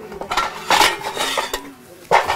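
Metal cooking pot and bowl clattering and clinking as they are set down on the ground, in a run of quick strokes over the first second and a half, with more clinks near the end.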